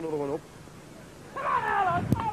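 Human voices: a man's low, held vocal sound on a steady pitch that stops shortly after the start. After a brief lull comes a higher-pitched call that falls in pitch near the end.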